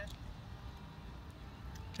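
Quiet outdoor background noise with a steady low rumble.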